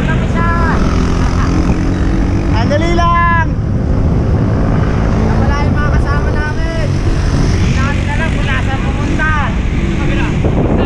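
Wind buffeting the microphone of an action camera on a moving bicycle, a steady rough rumble throughout. Riders' voices call out several times over it.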